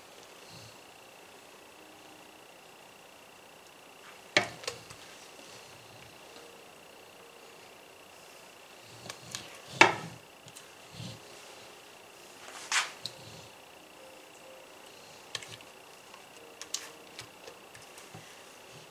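A spatula knocking and scraping against a glass mixing bowl while scooping out thick cake batter: a few sharp knocks, the loudest about ten seconds in, then lighter taps near the end. A faint steady high tone sits beneath.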